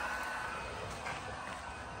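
Wagner electric heat gun blowing, a steady rushing hiss with a faint whine that fades out about half a second in, the air noise slowly getting quieter.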